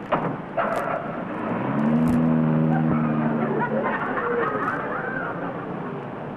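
A car's engine running as a convertible moves off, with a steady low drone for about two and a half seconds in the middle. Two short knocks come in the first second.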